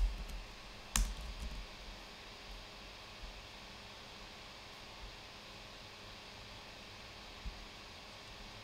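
Computer keyboard and mouse clicks: one sharp keystroke about a second in, then a few faint, scattered clicks over a steady low room hum.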